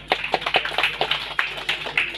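Audience clapping: scattered hand claps from a crowd, several a second and unevenly spaced.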